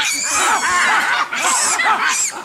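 A troop of monkeys calling at a leopard: many overlapping squealing and screaming alarm calls, with shrill screams near the start and again about one and a half seconds in.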